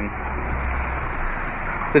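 Steady outdoor background noise, an even hiss, with a low rumble underneath that fades out about halfway through.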